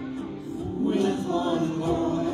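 Congregational worship song: a man and a woman lead the singing on microphones, with musical accompaniment.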